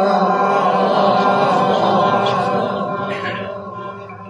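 A man's voice reciting the Quran in the melodic, drawn-out tajweed style, one long held phrase that fades out near the end.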